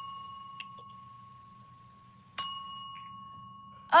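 Silver desk service bell: the ring of a strike just before fades at the start, then the bell is struck once more about two and a half seconds in, and its clear ding dies away.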